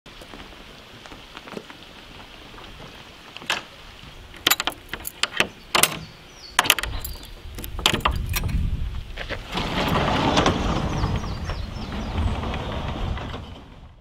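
A series of sharp clicks and knocks as a padlock is worked, then a heavy wooden barn door is opened with a long, rough scraping rumble lasting several seconds that dies away just before the end.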